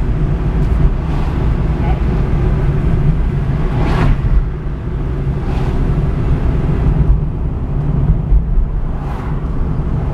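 Steady engine and road rumble inside a moving car's cabin, with a brief louder swish about four seconds in.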